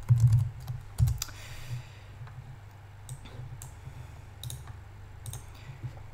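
Computer keyboard typing, loud, in the first second, then a few scattered clicks, all over a steady low hum from a desk fan.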